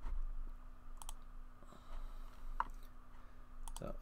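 A few separate computer mouse clicks: one about a second in, one a little past the middle and a quick pair near the end, over a faint steady electrical hum.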